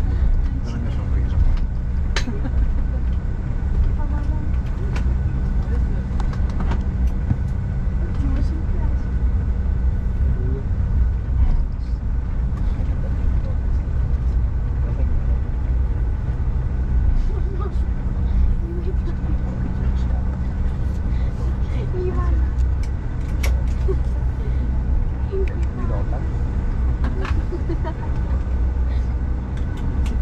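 Cabin noise of a Bombardier CRJ1000 taxiing: a steady low rumble from the rear-mounted turbofans at taxi power and the wheels on the taxiway, with a faint steady whine. Occasional small knocks and rattles from the cabin.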